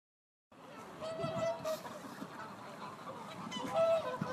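Flock of waterfowl on a lake honking: geese and swans calling, with a few short held honks among the chatter. The calls begin after a brief silence about half a second in.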